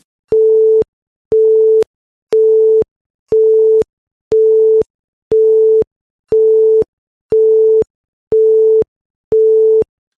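Electronic beep tone sounding ten times, one beep a second, each half a second long at one steady mid pitch with silence between, in the cadence of a telephone busy signal.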